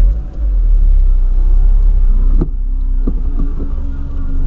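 Steady low rumble of a Volkswagen Polo driving, heard from inside the cabin, with a short click about two and a half seconds in.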